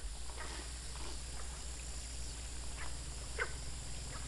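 Faint rural outdoor ambience: a steady low hum and hiss, with about five short, faint animal calls scattered through it.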